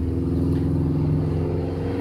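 A car engine idling with a steady, low, even hum.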